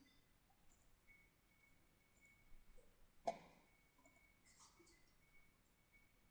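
Near silence with a faint steady high whine, broken by a few soft computer-mouse clicks about halfway through and one sharper click just after them.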